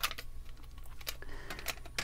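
Faint clicks and taps of a metal watercolour paint tin being handled and opened, with a few light strokes at the start and again near the end over a steady low hum.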